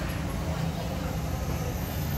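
A steady low rumble with indistinct voices in the background.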